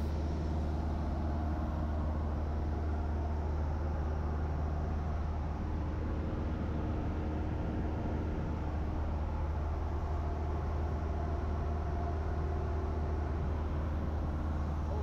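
Cabin drone of a Cessna Skyhawk single-engine propeller plane in flight: a steady, deep engine and propeller hum that holds even throughout.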